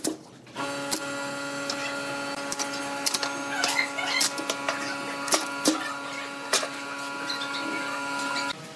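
A steady electric machine hum starts suddenly about half a second in, with scattered clicks and crackles from a plastic mold strip being peeled off a cast epoxy-resin block.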